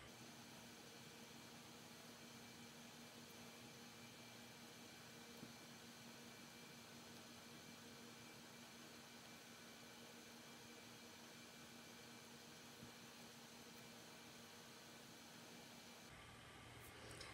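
Near silence: a faint steady hiss of room tone with a faint low hum and a couple of tiny ticks.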